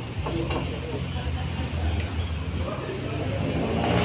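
Dining-room background: indistinct chatter of diners over a steady low rumble.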